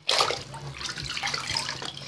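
Water splashing as toy dolls are plunged into a tub of water: a sudden splash at the start, then continuous sloshing and churning.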